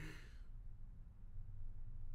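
A man's short breathy exhale, a sigh as his laughter dies away, fading within the first half second. After it only a low steady hum remains.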